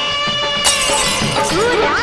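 Hindi film song music with a sudden bright crash about two-thirds of a second in that rings on for about a second, like a cymbal crash or a shattering sound effect on the soundtrack.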